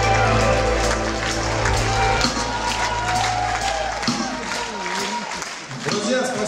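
A live band holding a final chord that cuts away about four seconds in, with the audience applauding and cheering over it.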